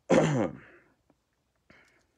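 A man clears his throat once, behind his hand: a short, harsh sound, falling in pitch, about half a second long.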